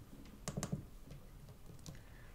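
Fingertips tapping the glass touchscreens of iPhones lying on a wooden table: a few faint taps, two close together about half a second in and one near the end.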